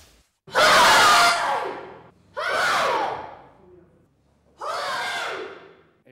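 Karate class shouting kiai together three times, about two seconds apart, the first shout the loudest, each one trailing off.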